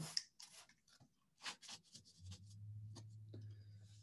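Faint rustling and scratching of yarn being pulled through the strings of a small hand loom, in a few short spells during the first two seconds. A low steady hum follows for about the last two seconds.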